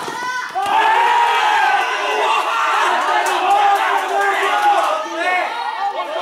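A group of men shouting and cheering together over each other as a goal is scored in a small-sided football match, with a sharp knock right at the start.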